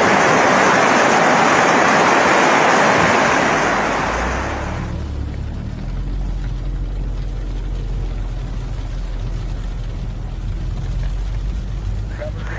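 Loud rushing floodwater that cuts off about four and a half seconds in. It gives way to a quieter, steady low rumble.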